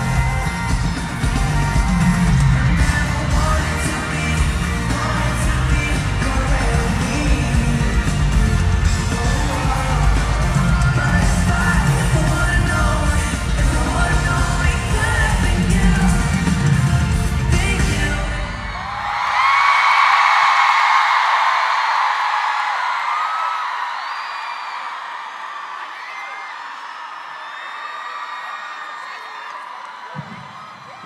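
Live pop music with a singing voice and heavy bass plays through an arena sound system. About two-thirds of the way in the music stops, and a large crowd of fans screams, the shrieks slowly dying down.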